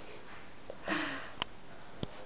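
A dog sniffing at the floor. One short, breathy sniff comes about a second in, followed by a small click.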